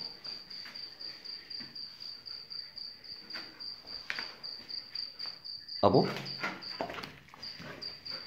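A cricket chirping steadily in a high-pitched, pulsing trill. A man's voice calls out briefly about six seconds in.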